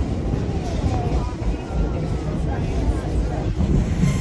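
Steady rumble and wind of a moving passenger train, with faint voices underneath.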